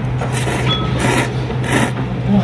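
Ramen noodles slurped in four or five quick pulls, about two a second, over a steady low hum.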